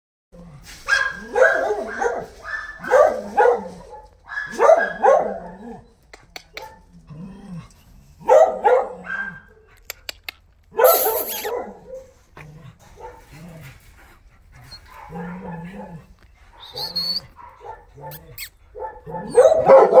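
Dogs barking in short runs of several barks, a new run every few seconds.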